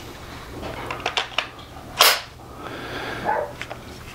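Makita 18V LXT lithium-ion battery being slid onto a cordless jigsaw: a few light clicks, then one sharp snap about two seconds in as it latches home.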